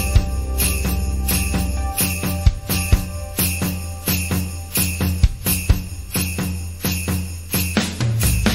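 Percussion interlude of a song's backing track: a steady rhythm of short hand-percussion strikes over low sustained bass notes, the deepest bass note dropping out about two seconds in.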